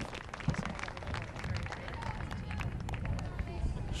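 Open-air field ambience: a steady low rumble of wind on the microphone, with faint distant voices and scattered sharp ticks.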